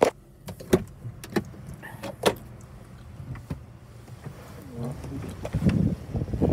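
A car's glove box lid shut with a sharp click, followed by scattered small clicks and knocks and rustling as someone moves about inside the car cabin, the rustling louder near the end.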